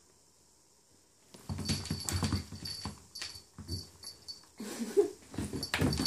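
Welsh Corgi puppy in dog shoes scrambling on a wooden floor, starting about a second and a half in: a quick run of clattering, scuffing steps, with a short whine about five seconds in.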